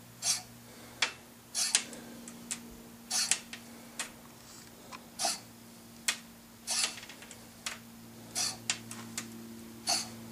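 Irregular sharp clicks and short ticks, roughly one a second, from a fishing rod and reel being worked to tap and slowly retrieve a jig, over a steady low hum.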